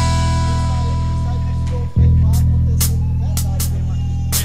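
Live church band music: held low chords on bass and guitar, with a new chord struck about two seconds in and a few light drum hits after it.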